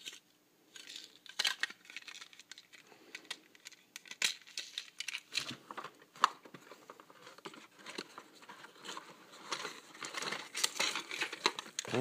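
Clear plastic wrapping on toy train cars crinkling and rustling as it is handled and pulled at, in irregular crackles and small clicks.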